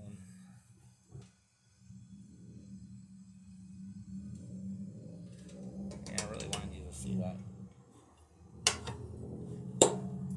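Low steady hum of the pellet gasifier stove's final combustion stage burning off the process gases at the open port, dropping out briefly early on, with two sharp metallic knocks near the end.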